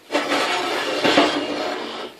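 Egg roll pieces in sweet and sour sauce sizzling steadily in a hot cast iron skillet, starting suddenly and easing slightly toward the end, with a light knock about a second in.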